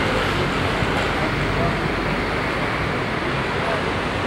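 Steady city street noise: a constant hum of traffic with an indistinct murmur of voices.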